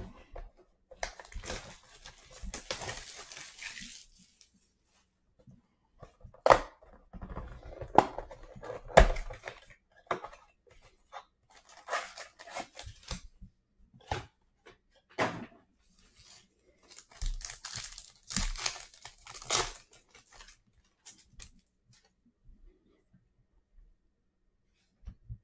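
Plastic shrink wrap crinkling as it is peeled off a blaster box of trading cards, then a run of sharp tearing and crinkling sounds as the cardboard box is opened and card packs are ripped open, with quieter card handling near the end.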